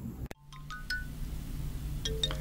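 A sharp click at an edit, then a few bright chime notes at different pitches ringing out one by one over a low steady hum.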